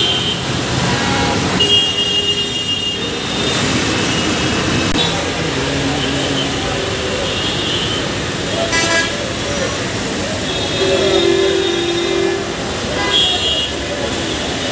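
Busy road traffic heard from an overhead footbridge: a steady traffic roar with vehicle horns honking several times, including a long horn blast about eleven seconds in.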